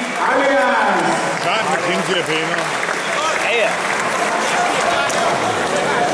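Spectators at a jiu-jitsu match shouting and clapping, many voices overlapping over a steady clatter of applause.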